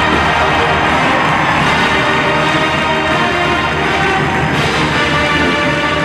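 A brass-heavy band playing loud, sustained music, with no break or sudden event.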